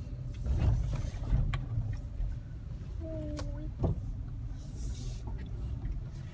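Car cabin noise while driving: a steady low rumble of engine and road. A short steady tone sounds about three seconds in.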